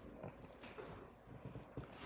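Pug making faint, weird little noises, a string of short soft sounds, while its chin is stroked.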